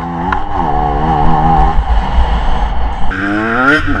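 KTM EXC 125 two-stroke enduro motorcycle under way, its engine pitch wavering as the throttle is worked, then rising steeply about three seconds in as it revs up and accelerates.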